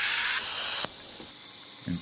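Piezotome ultrasonic surgical handpiece with the ligament-cutter tip running under irrigation spray: a steady high hiss as it cuts the periodontal ligament around the tooth root. The hiss cuts off suddenly a little under a second in.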